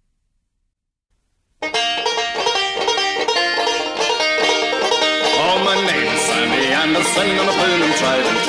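Silence between album tracks, then the instrumental intro of a Scottish folk song starts suddenly about a second and a half in, led by quickly picked banjo with other plucked strings.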